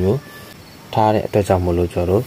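A man's voice speaking in short phrases, with a pause of about a second before the talk resumes.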